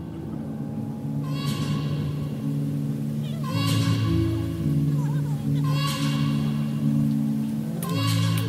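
Background music: sustained low chords that shift every second or so, with a high, voice-like phrase recurring about every two seconds.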